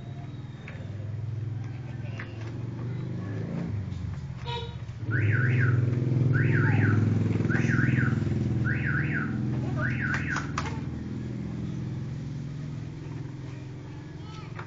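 A motor vehicle running, a steady low rumble that grows louder about a third of the way in. Over it an electronic alarm warbles: pairs of quick up-and-down sweeps repeated five times, about one pair every second and a quarter, stopping a little past the middle.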